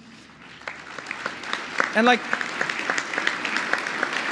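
Audience applause from a large crowd, growing louder over the few seconds.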